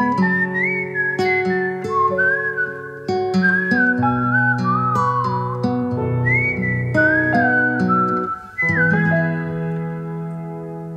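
Acoustic guitar picking under a whistled melody, an instrumental passage of an acoustic folk song. The whistled line slides between notes, and about nine seconds in the guitar strikes a final chord that is left ringing and fading.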